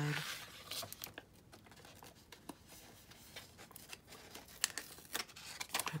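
Soft rustling and crinkling of a paper sticker sheet being bent and its stickers peeled off with tweezers, with a few light sharp clicks, the loudest about four and a half seconds in.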